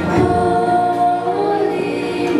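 Children's choir singing a Christmas carol together into stage microphones, holding one note for about a second before moving on.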